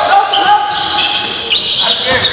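A basketball bouncing on the hardwood floor of a gym during play, a few sharp bounces over the court noise.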